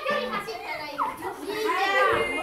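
A group of schoolchildren talking and calling out excitedly, their voices overlapping, with a louder call near the end.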